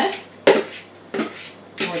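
A spoon knocking against a plastic mixing bowl as sticky seed dough is scraped out: one sharp knock about half a second in, then a lighter one.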